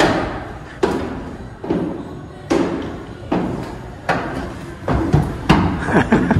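Footsteps thudding on steep indoor stairs, about one step every 0.8 s, quickening near the end. Each thud trails off in an echo.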